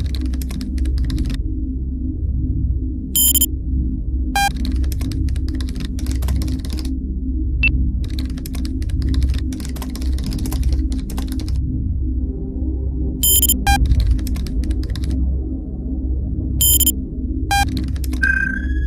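Typing sound effect for on-screen terminal text: bursts of rapid keyboard clicks, each lasting a second or more, over a low, steady electronic music drone, with several short electronic beeps scattered through.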